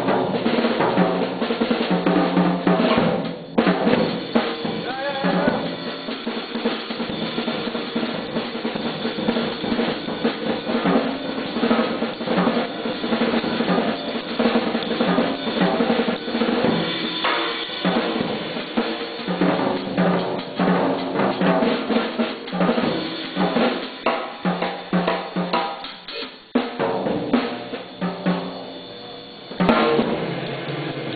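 Jazz drum kit played solo: fast strokes moving across snare, toms, bass drum and cymbals, with rolls and rimshots. The playing drops to a quieter stretch near the end, then a loud hit closes it.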